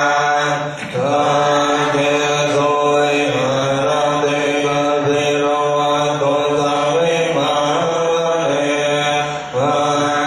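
Chanting as background music: sustained chanted voices over a steady drone, with a brief dip about a second in and another near the end.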